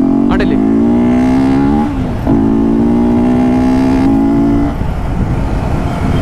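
Honda CBR250R single-cylinder engine, fitted with a BMC performance air filter, pulling away hard with its note rising in pitch. It has a short break about two seconds in where it shifts up, then pulls steadily in the next gear. Near the end the engine note drops back under a rougher rushing noise.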